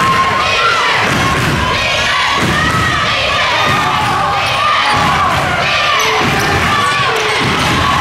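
A basketball dribbled on a hardwood gym floor, bouncing about once a second, under a crowd of spectators shouting and cheering.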